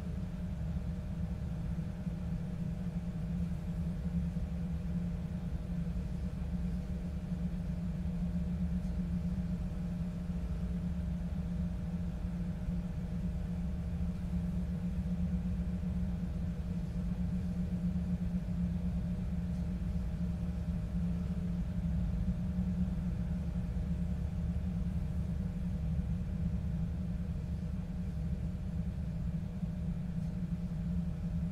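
A steady low rumbling drone that holds unchanged throughout, with a faint higher hum over it; an ominous ambient bed laid under the silent séance scene.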